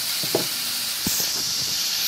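Chicken breast pieces sizzling as they brown in a hot non-stick frying pan: a steady hiss with a couple of faint pops.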